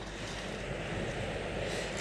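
Steady outdoor background noise with no distinct events: an even rush on an open shingle beach.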